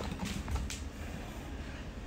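Black plastic food container's slotted lid creaking and rubbing under the hands as it is pressed shut, with a couple of soft clicks in the first second.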